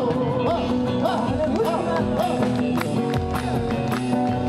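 Live folk band playing a chacarera on acoustic guitar, electric guitar and drum kit, with a steady beat.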